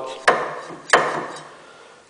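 Two knocks about half a second apart on the metal feed-roller and bearing assembly of a homemade planer as it is handled, each ringing briefly as it fades.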